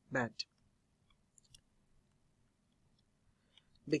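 A single spoken word, then near silence with a few faint, scattered clicks from computer input as the on-screen work is edited.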